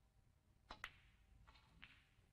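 Snooker balls clicking during a shot: two sharp clicks in quick succession, the second the louder, followed about a second in by two softer knocks.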